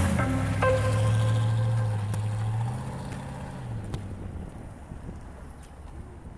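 A car engine running steadily, its note dropping in steps about three seconds in as the sound fades away.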